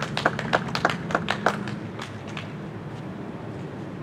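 Scattered applause from a small audience, separate hand claps that thin out and die away about two seconds in, leaving a low steady background noise.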